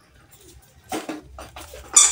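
A kitten playing with a small toy ball on a wooden floor: short knocks and scuffles of ball and paws, a cluster about a second in and a sharper, louder one at the end.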